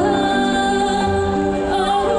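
A woman singing live into a microphone, holding one long note over steady instrumental backing, then sliding into the next notes near the end.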